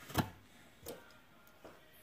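Three light metallic clicks about three-quarters of a second apart, the first the loudest: the removed steel bicycle cassette being handled and set down.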